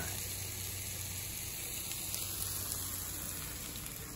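Sliced green peppers, onions and mushrooms frying in an electric skillet: a steady sizzle.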